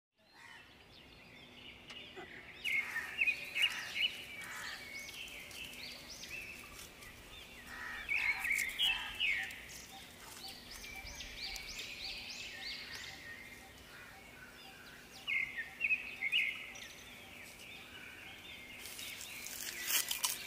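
Birds chirping in three short bouts of quick rising and falling calls over a steady faint outdoor background. Near the end, a run of sharp clicks.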